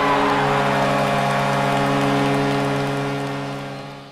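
Hockey goal horn sounding one long steady blast over crowd cheering, fading out near the end.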